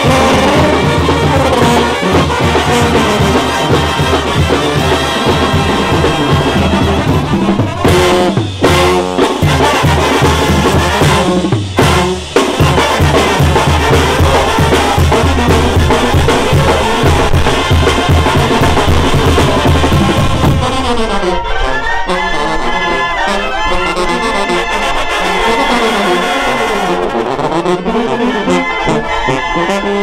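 Oaxacan brass band playing a son: trumpets, trombones, clarinets and sousaphones over a drum kit with timbales and cymbals. About two-thirds of the way through, the bass and drums drop back and the horns' melody stands out.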